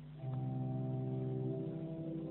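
Church organ playing slow sustained chords after the benediction, a full chord entering just after the start and moving to a new chord about a second and a half in.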